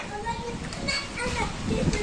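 Faint voices in the distance, a child's among them, with a few short calls around the middle.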